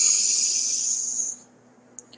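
A woman's deep breath in through the nose: a steady hiss lasting about a second and a half that then cuts off.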